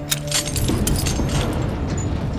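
Sound effects of a key jangling and clicking as it turns in a lock, then from about half a second in a low, grinding rumble as the hidden wall slides open.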